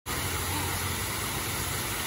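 Water spilling over the rim of a large bowl fountain into its pool, a steady splashing, with a low traffic rumble underneath.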